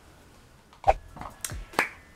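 Finger snapping: three sharp snaps starting about a second in, the first the loudest.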